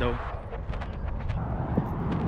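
Handling noise from a handheld camera being carried while walking: scattered rustles and light knocks over a steady low rumble.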